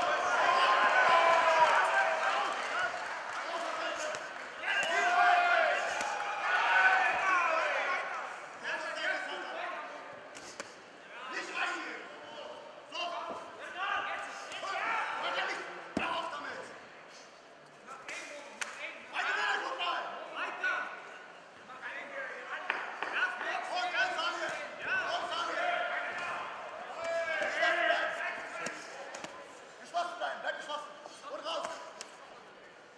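Shouting voices from ringside in a large hall, over the sharp thuds of gloved punches and kicks landing at irregular intervals, one especially hard strike about halfway through.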